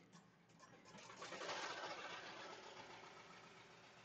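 Melco multi-needle embroidery machine running faintly as it stitches out a patch, coming up about a second in and running on steadily.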